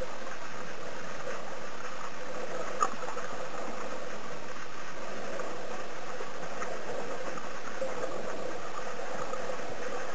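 Steady underwater noise picked up by a camera below the surface, with a single small click about three seconds in.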